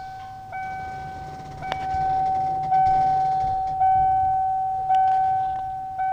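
An electronic warning chime repeats a single ringing tone about once a second, each ring fading before the next, over a low steady hum while the motorhome's hydraulic leveling jacks retract.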